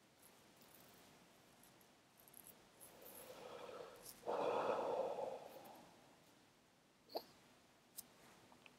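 A person breathing out in a long, breathy sigh that builds for a couple of seconds and is loudest in the middle, with a faint click near the end.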